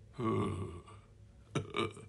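A man's voice making a low, drawn-out sound without words for under a second, then two short vocal sounds near the end.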